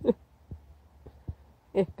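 A cat's short call right at the start, falling in pitch, during cats' play-fighting. A few soft low thuds follow.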